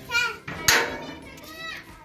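Children's voices: short high-pitched calls and exclamations, the loudest a little under a second in.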